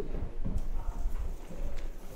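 Footsteps on a wooden floor, a few irregular thuds about half a second apart.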